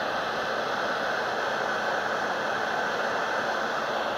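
Heat gun running steadily, its fan blowing an even rush of hot air onto the end of a urethane belt to melt it for joining.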